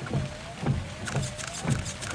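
Car windshield wipers sweeping fast in heavy rain, about two strokes a second, each stroke a thump with a brief whine.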